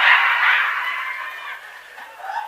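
Audience laughing after a punchline, dying away over the first second and a half.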